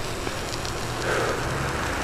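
Steady hiss of a bicycle's studded tyres rolling over a wet, snowy road.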